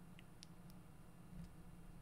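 Near silence: faint room tone with a low hum, and two very faint ticks in the first half second.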